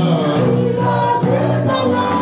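Gospel music with a group of voices singing over a bass line and a steady beat.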